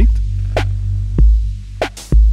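Electronic track in 7/8 built from sampled synths and drum machines: heavy deep kick-drum thumps at uneven spacing over a sustained low bass tone, with a few short sharp percussion ticks between the kicks.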